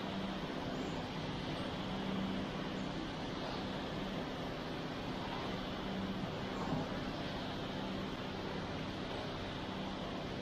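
Steady drone of an idling truck engine: an unchanging low hum over constant noise. A single brief knock sounds near the seven-second mark.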